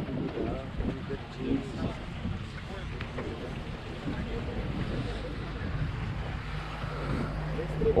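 Small motorboat's engine running steadily, with wind on the microphone; voices talk in the first couple of seconds.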